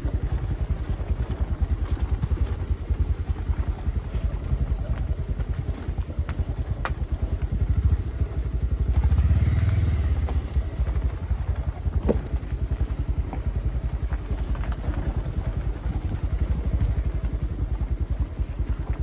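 A small engine running steadily, a low rumble with a rapid, even pulse that swells about nine seconds in, with a few sharp clicks.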